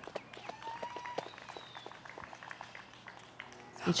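Quiet outdoor ambience with scattered faint clicks and a brief whistled tone that rises and then holds, about half a second in. A voice cuts in right at the end.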